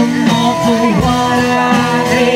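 Live rock band playing: two electric guitars, bass guitar and drum kit, loud and steady.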